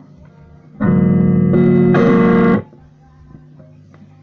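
Electric Stratocaster guitar through an amplifier: about a second in, a loud strummed chord rings out and changes twice in quick succession, then is cut off suddenly after under two seconds. A low steady hum lies underneath.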